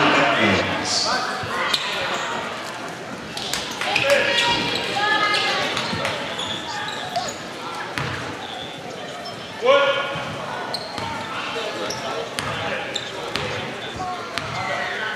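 Voices and shouts in a gymnasium with a basketball bouncing on the hardwood court during a free-throw break. The loudest moment is a single shout about ten seconds in.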